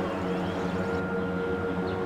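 Background music: soft, sustained held tones with no beat.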